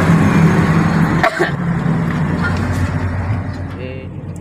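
Komatsu PC400-8 excavator's diesel engine running hard with a dense hydraulic roar, heard from inside the cab as the machine works under load. The roar eases about a second in and tapers off toward the end.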